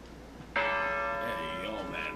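A hanging bell struck once about half a second in, its tone ringing on and slowly fading.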